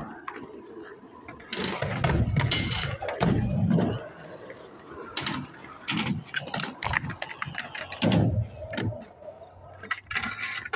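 Skateboard wheels rolling over concrete, a rough rumble that rises and falls, followed from about the middle onward by several sharp clacks of the board's deck and wheels hitting the ground.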